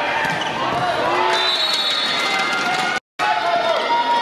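Volleyball rally: sharp slaps of the ball being hit, over shouting voices of players and crowd. The sound cuts out completely for a moment about three seconds in.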